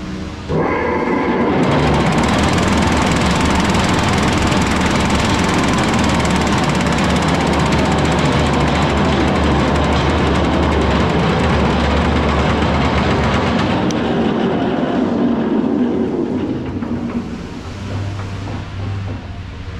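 A Roto Finish ST20 10 hp vibratory finishing tumbler starting up about half a second in: a sudden, loud, steady vibrating rattle over a low hum, which winds down and fades near the end.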